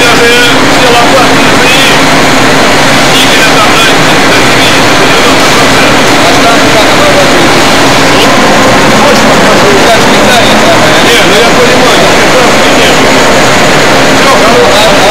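Steady, loud machine-shop noise from running machine tools, with indistinct voices over it.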